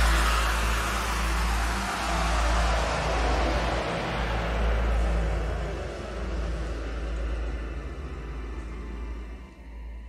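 Film sound effects of a dream world shattering and falling away: a deep rumble under a hissing wash that slowly dulls and fades.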